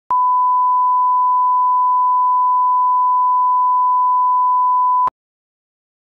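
Broadcast line-up test tone (a 1 kHz reference tone) played with television colour bars: one steady, pure, loud beep lasting about five seconds, starting and cutting off suddenly with a click.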